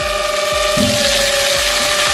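Steady whine of a dump truck's hydraulic hoist tipping the bed, with a rush of water pouring out of the back that grows louder.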